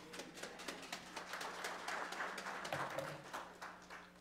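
A congregation clapping, a dense patter of hand claps that dies away near the end.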